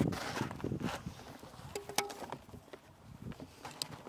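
Soft steps and light scattered clicks on a clay court over a quiet outdoor background. A brief low tone comes near the middle and a short high chirp near the end.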